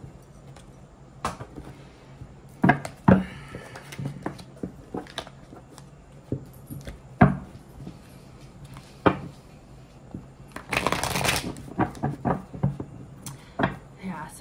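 A deck of tarot cards being handled and shuffled by hand. There are several sharp taps and knocks of the cards spread through the stretch, and a short burst of dense shuffling rustle about eleven seconds in.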